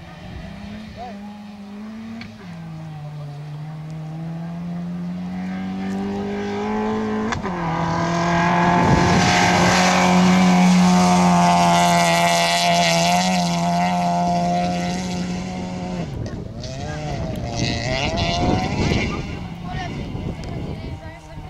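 Rally car engine accelerating hard on a gravel stage, rising in pitch with two gear changes, growing louder as the car approaches and loudest as it passes. The note cuts off abruptly about three-quarters of the way through and a different, uneven engine sound follows near the end.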